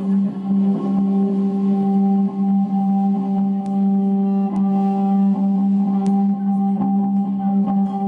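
Cello bowed on one low sustained note, a steady drone with a few faint clicks over it.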